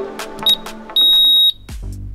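Interval-timer beeps over electronic dance music: a short high beep, then a longer high beep about a second in, marking the end of the work interval and the start of the rest.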